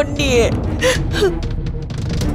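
Background score held as a steady low drone under a short, sharp gasp early on, with a spoken phrase trailing off and a couple of brief breathy vocal sounds after it.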